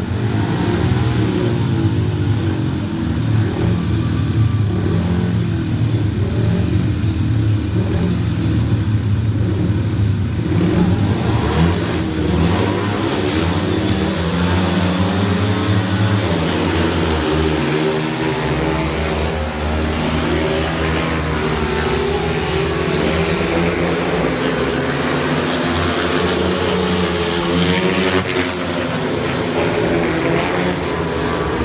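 Four speedway bikes' 500 cc single-cylinder methanol engines revving together at the starting gate. Past halfway they open up as the riders leave the start, and the engine notes rise and fall as the bikes race off around the track.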